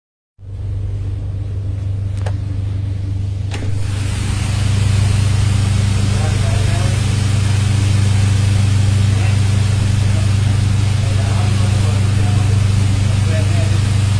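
Steady low drone of a boat's engines heard from inside the wheelhouse, joined about three and a half seconds in by a hiss of water spray and wind. Faint voices in the background.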